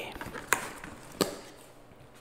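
Styrofoam clamshell takeout container being pried open by hand: two sharp snaps about two-thirds of a second apart as the lid comes free.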